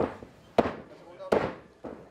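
A steady run of short, sharp smacks, about two a second, the loudest about half a second in.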